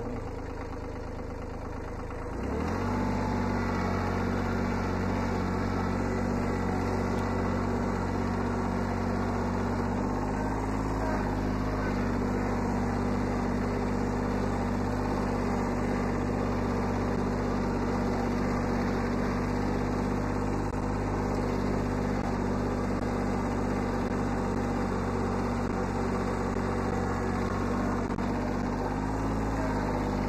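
1981 Kubota B7100 HST diesel tractor's small three-cylinder engine running; it is throttled up about two and a half seconds in and then holds a steady working speed as the tractor drives with its loader. The pitch rises briefly twice, once around ten seconds in and again near the end.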